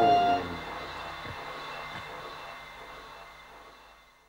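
A live progressive-rock band's closing chord cuts off about half a second in, leaving a few held notes ringing and fading slowly away to silence.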